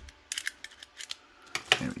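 Plastic spring-loaded phone holder clamp of a flexible tripod clicking as it is stretched open by hand: a quick cluster of small clicks about a third of a second in, then a few single clicks.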